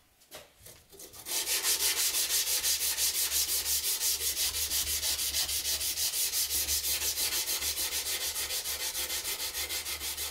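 Damascus steel knife blade being hand-sanded with an abrasive block, in rapid back-and-forth rubbing strokes, about seven a second. The sanding starts about a second in and keeps an even rhythm.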